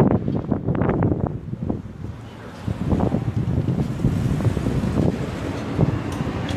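Wind buffeting the microphone: a gusty low rumble throughout, with a few short knocks in the first second.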